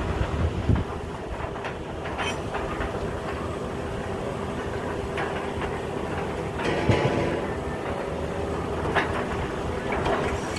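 Truck-mounted borewell drilling rig running steadily, with a few sharp metallic clanks from the drill head, the loudest about seven seconds in.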